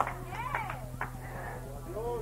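A person crying out with short, high-pitched wailing calls that rise and fall in pitch, a sign of someone in distress. A steady electrical hum runs underneath.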